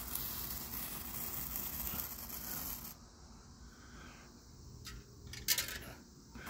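A handheld Brothers multicolored sparkler fizzing steadily, then stopping about three seconds in as it burns out. A few faint clicks follow near the end.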